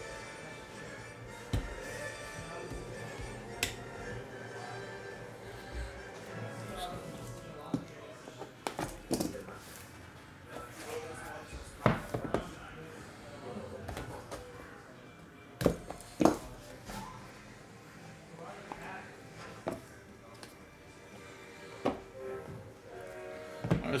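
Quiet background music with intermittent thunks, taps and rustles of a cardboard trading-card box and its contents being handled, as the lid comes off and the cards and booklets are taken out.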